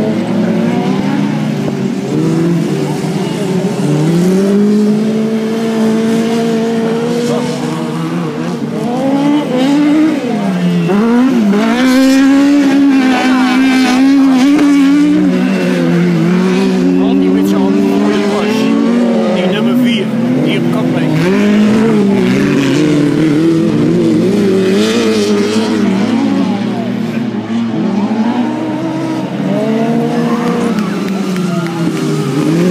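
Several small autocross buggy engines racing on a dirt track, overlapping and rising and falling in pitch as the buggies accelerate and back off through the corner.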